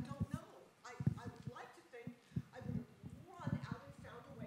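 A woman speaking, her words indistinct, with a run of short low thumps under the speech.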